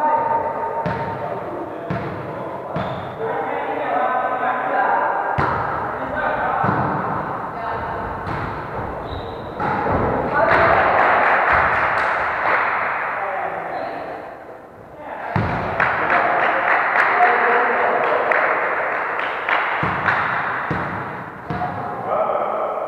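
Volleyball play in a gymnasium hall: irregular sharp thuds of hands striking the ball and the ball hitting the wooden floor, ringing in the hall, over players' voices and shouts.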